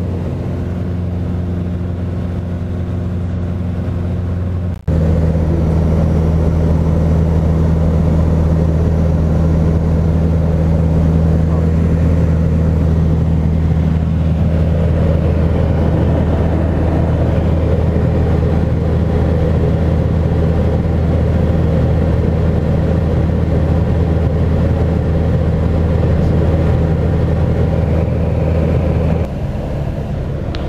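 Single-engine light aircraft's four-cylinder Lycoming piston engine and propeller droning steadily in flight, heard inside the cockpit. The drone drops out for an instant about five seconds in and comes back with a different mix of low tones, and shifts again near the end.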